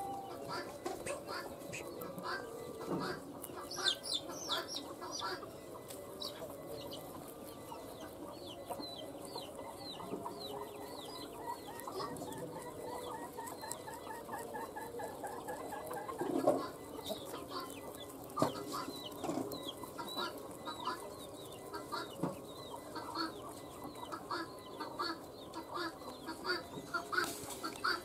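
Chickens clucking on and off throughout, mixed with many short, high, falling chirps. Close by, rabbits chew and rustle through cut grass blades, giving short crackly crunches.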